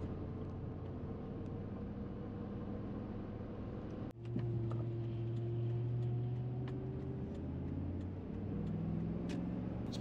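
Car engine and road noise heard from inside the cabin while driving: a steady low hum with a faint whine above it. The hum changes abruptly about four seconds in, and faint light ticks come through the second half.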